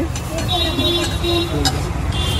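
Steady street traffic rumble with people talking in the background. A thin, high-pitched tone sounds for about a second, starting half a second in.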